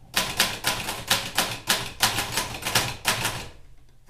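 Manual typewriter being typed on: a quick, uneven run of key strikes, about five or six a second, that stops about half a second before the end.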